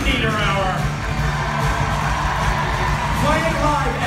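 Live rock band playing a steady groove under the introductions, with a held bass line and guitar, and voices shouting and whooping over it.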